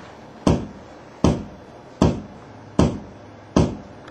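A sharp knock repeated at an even pace, five times, about every three-quarters of a second, each dying away quickly.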